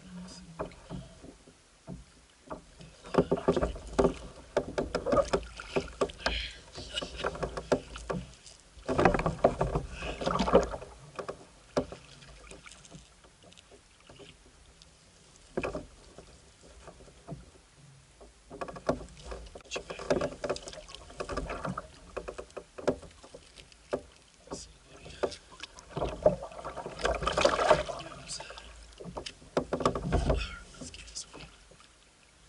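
Irregular knocks, clicks and rustles from handling gear and a fish aboard a plastic fishing kayak. They come in bursts with quieter stretches between.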